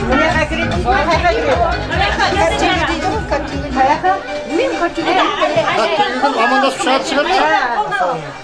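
Several people talking at once over background music. The music's low beat drops out about halfway through, leaving mainly the chatter.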